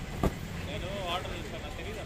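Street background of a steady low traffic rumble and people's voices, with a single sharp knock about a quarter of a second in.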